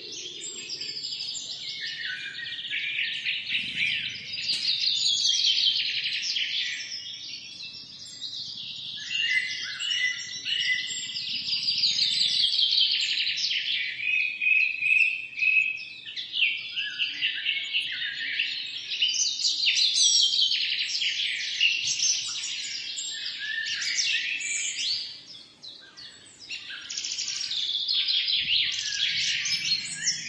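Many birds chirping at once: a continuous, overlapping chorus of rapid high-pitched chirps and trills, dipping briefly near the end.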